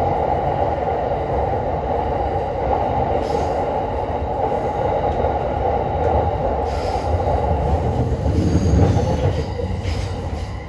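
Train running, heard from inside the passenger car: steady rumble of wheels on the rails with a constant mid-pitched whine, the rumble growing louder a second or two before the end.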